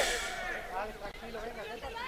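Faint voices talking and chattering in the background.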